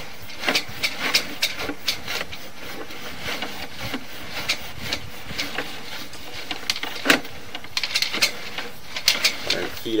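Sewer inspection camera's push cable being fed by hand through the cleanout, with irregular clicks and rattles over a steady hiss.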